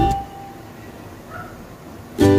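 Ukulele background music dies away just after the start, leaving a faint, steady low noise with a brief faint tone about halfway through.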